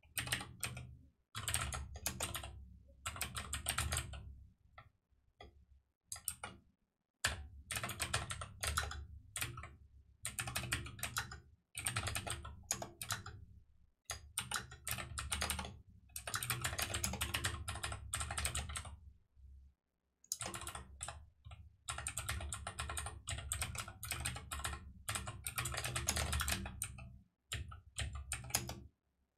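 Fast typing on a computer keyboard, in runs of a few seconds broken by short pauses.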